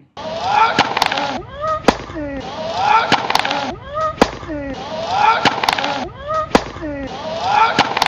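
Tennis serves heard four times, about two seconds apart: a racket strikes the ball with a sharp crack, and the server lets out a short exhaled grunt that slides in pitch. The grunts are the natural, unforced kind that come out with the breath on the stroke.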